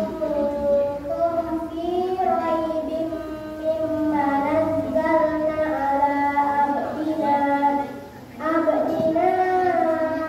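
A child singing a slow melody in long held notes, pausing briefly about eight seconds in before carrying on.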